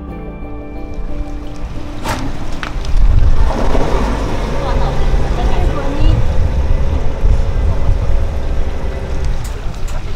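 Background music ends about two seconds in and gives way to live outdoor sound: a loud low rumble that builds from about three seconds, with people talking.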